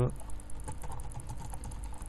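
Typing on a computer keyboard: a quick, uneven run of keystroke clicks, over a low steady hum.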